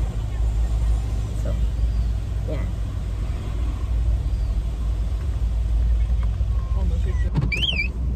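Low, steady rumble of a car heard from inside its cabin, with a short high-pitched wavering sound near the end.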